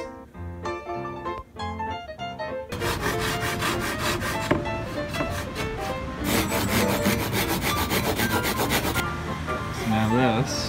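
Hand saw with a thin, fine-toothed blade cutting through a wooden board, in quick back-and-forth strokes that start about three seconds in, come thickest near the end and stop about a second before it. Background music plays underneath, heard alone at the start.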